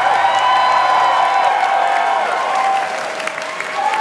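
Audience applauding and cheering with whoops at the end of a live acoustic song.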